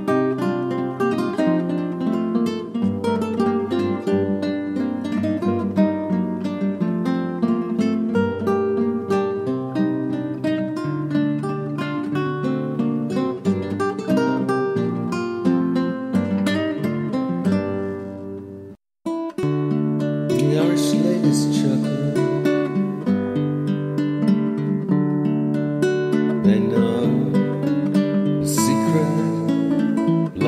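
Instrumental folk-tune arrangement on plucked, guitar-like strings, a busy melody over bass notes. It cuts out dead for about half a second roughly two-thirds of the way through, then starts again.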